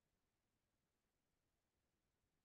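Near silence: only a faint, even noise floor, with no distinct sound.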